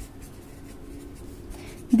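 Pen writing on paper, a run of faint, short scratching strokes as the tip moves across a notebook page.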